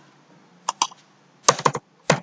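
Computer keyboard keystrokes: two quick clicks, then three more about a second and a half in, as a new number is typed into a field.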